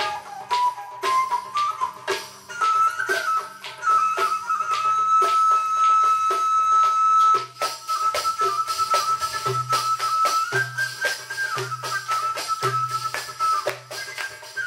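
Live Middle Eastern ensemble music: a single melody line wanders, then holds one long high note for about three seconds midway, over a steady beat of quick hand-percussion strokes. A deep pulsing beat grows stronger in the second half.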